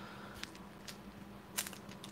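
Faint crinkling and a few light clicks of a foil trading-card pack wrapper being picked up and handled, the loudest about one and a half seconds in.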